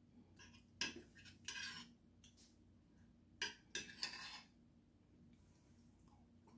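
Metal spoon clinking and scraping against a ceramic plate while scooping up fish and broth: a sharp clink and a short scrape about a second in, then a cluster of clinks and another scrape around three and a half to four seconds in.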